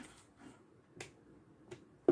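Near silence broken by one sharp click about a second in and a fainter tick near the end: a red insulated spade connector being pushed onto a battery's positive tab terminal.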